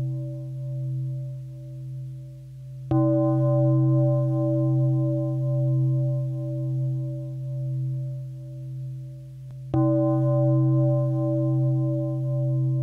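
A deep Buddhist temple bell struck twice, about seven seconds apart. Each stroke rings on with a slow, wavering hum that carries into the next.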